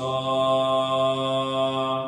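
A man's voice holding one long chanted note at a steady pitch, fading out just before the end.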